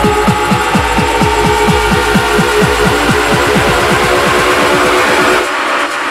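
Techno from a live DJ mix: a fast, even run of deep bass hits, each dropping in pitch, under a steady synth layer. The bass drops out about five and a half seconds in.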